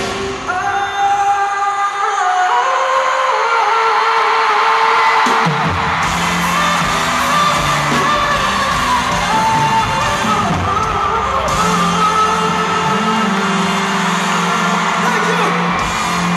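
Live pop band with a horn section playing in an arena, heard from the crowd: held notes stepping upward with no bass at first, then bass and drums coming in about five and a half seconds in. Audience whoops and yells over the music.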